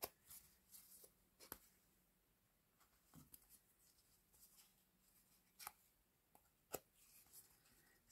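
Near silence, broken by a handful of faint, short clicks and rustles as threads are lifted out of and pressed into the slots of a foam kumihimo braiding disk.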